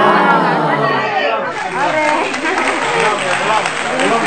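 Several people talking and exclaiming over one another, with one loud, drawn-out voice falling in pitch during the first second.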